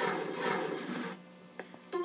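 Television broadcast audio heard through the set's speaker: a rushing noise lasting about a second that cuts off abruptly, followed by a quieter moment with a few faint ticks.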